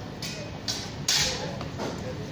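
A quick longsword exchange: four sharp hits and scuffs in two seconds, the loudest about a second in, of blades and feet on a wooden floor.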